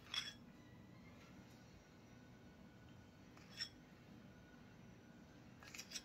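Near silence broken by three faint, short clinks of a metal spoon against dishes as caramel sauce is dabbed from a small bowl onto batter in a glass loaf pan: one at the start, one around the middle and one near the end.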